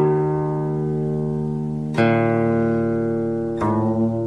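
Slow traditional Chinese instrumental music on a plucked string instrument: three plucked notes or chords about two seconds apart, each ringing out long and fading. The last one wavers in pitch near the end.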